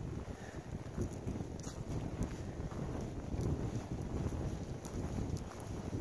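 Wind blowing across the microphone: a steady low rumble.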